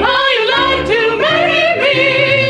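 A small group of performers singing together in close harmony, a woman's voice clear among them, with the held notes changing pitch every half second or so.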